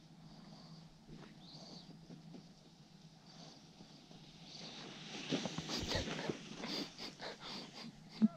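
Wooden sled runners scraping and crackling over packed snow as a sledder comes down the track and passes close by. The sound swells about halfway through, is loudest for a couple of seconds, then fades.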